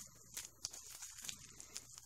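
Faint rustling and small clicks of small plastic zip-top bags of glitter being handled and set down on a table.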